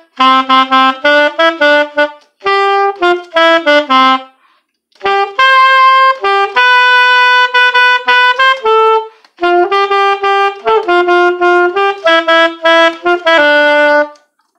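Solo soprano saxophone playing a simple children's song melody in short, separate notes grouped into phrases, with a long held note near the middle and brief pauses between phrases.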